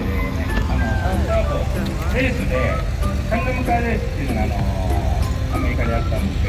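Classic air-cooled Porsche 911 flat-six engines running at low speed as the cars roll past one after another, a steady low rumble. Voices and music are heard over it.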